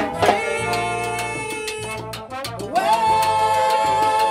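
Salsa-style Latin band music with steady percussion and horns; about three-quarters of the way in, a chord slides up into place and is held.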